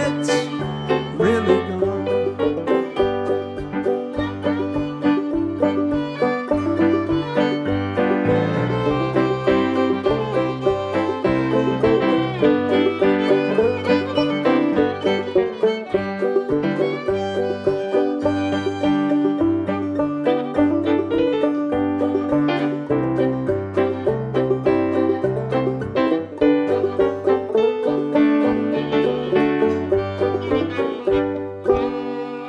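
Instrumental break of a folk song played live on banjo, fiddle and Yamaha electric keyboard, with banjo picking over a stepping bass line from the keyboard.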